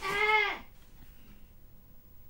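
A person's loud 'AHHHH' cry, lasting about half a second at the start, its pitch rising then falling.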